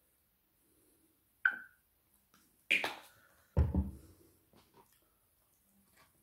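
A plastic ketchup squeeze bottle being handled and set down on the table: a sharp click about a second and a half in, a louder knock a second later, then a heavy thud.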